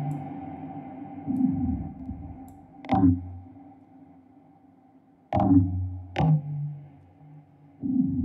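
Sound-designed electronic loop playing back: a few sharp percussive hits, one with a low falling sweep, each leaving steady metallic ringing overtones from Corpus in membrane mode and a phaser, with reverb tails fading between hits.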